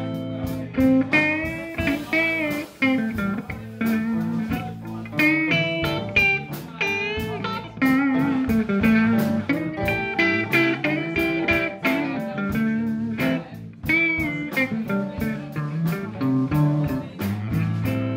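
Live blues band playing: guitars, bass guitar and drum kit, with a lead line of bent notes over a steady drum beat.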